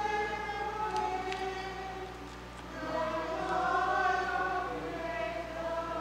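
A small congregation singing a hymn together, several voices holding long, slow notes.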